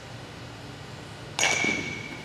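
A softball struck by a metal bat about one and a half seconds in: a sharp crack followed by a ringing ping that fades over about half a second.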